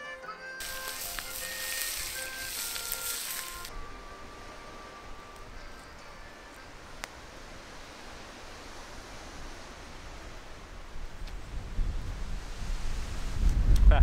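Trout fillets sizzling on a stick over a campfire: a dense hiss that starts about half a second in and cuts off suddenly at about four seconds, under background music that fades out. A low rumble of wind on the microphone builds near the end.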